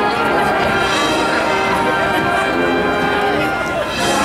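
High school marching band playing: brass and woodwinds hold sustained chords that change several times.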